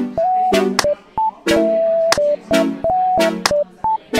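Kawaii-style electronic dance music: short, choppy synth chord stabs with a high, beeping tone melody over them and sharp drum hits, with brief gaps between the phrases.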